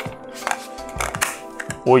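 Several light clicks and knocks of a hard ABS plastic device casing being handled and gripped at its end cap, over steady background music.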